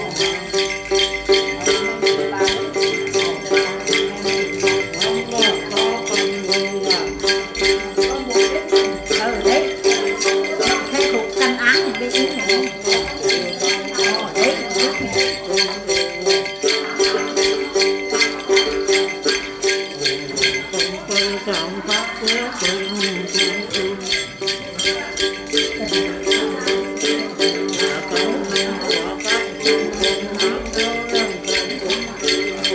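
Then ritual music: a cluster of small bells (xóc nhạc) shaken in a steady rhythm, about three jingles a second, over the plucked strings of a đàn tính lute.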